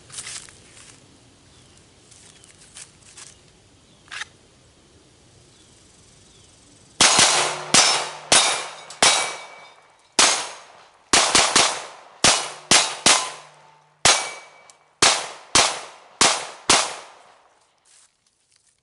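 CZ Shadow 2 9mm pistol firing well over a dozen shots in quick, uneven strings, starting about seven seconds in and running until the magazine is empty. A few hits leave steel plates ringing briefly.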